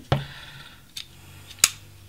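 Sharp clicks of a folding knife working at the plastic seal on the edge of a phone box as it is cut open, three of them, the loudest near the end.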